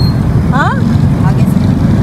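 Steady low rumble of street traffic, with a short rising voice call about half a second in.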